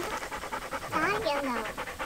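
Dog panting quickly and steadily, with a short sliding pitched sound rising then falling about a second in.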